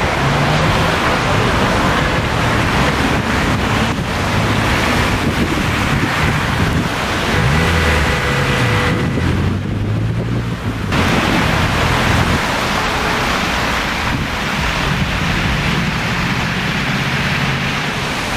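Heavy road traffic on a wet road: a steady hiss of tyres on wet asphalt with engines running underneath, and wind on the microphone.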